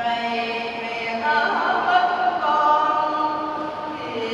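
A choir singing a slow hymn in long held notes, moving to new notes a couple of times.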